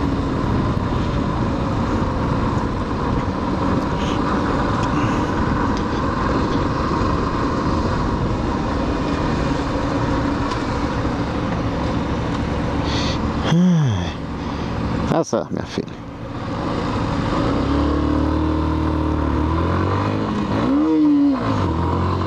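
A Yamaha Factor 150's single-cylinder four-stroke engine running under way, with heavy wind rushing past. A little past halfway the engine note falls away as the bike slows almost to a stop, then it picks up again as the bike pulls off, with the revs rising and dropping at a gear change near the end.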